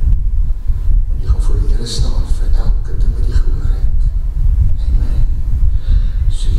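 A man's voice speaking through a handheld microphone, over a heavy low rumble.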